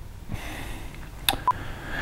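Quiet room tone with a soft intake of breath, then a sharp click and a brief tiny blip about a second and a half in.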